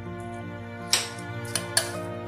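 Background music, with a few sharp clinks of a metal spoon against a ceramic bowl as boiled potatoes are mashed, the first about a second in and two more close together shortly after.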